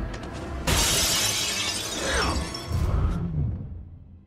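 A loud crash of shattering glass about two-thirds of a second in, over a dramatic film score with deep booming lows. The whole mix fades out near the end.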